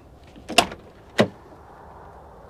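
Car door of a 1999 Mercury Grand Marquis being opened by its handle: two sharp latch clicks, the second about two thirds of a second after the first.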